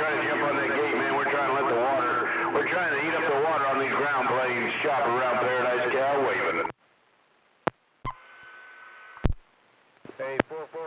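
A voice coming in over a CB radio receiver, with a steady hum and tone under it. The transmission cuts off suddenly about seven seconds in, followed by a few sharp clicks and about a second of open carrier with a steady whistle, then another click.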